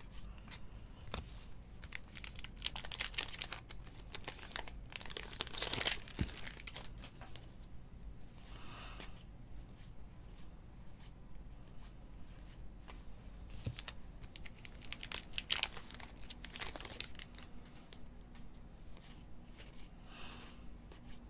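A stack of trading cards being flipped through by hand, the card stock sliding and scraping against itself in papery rustles. The rustling comes in clusters, busiest in the first several seconds and again a little past the middle.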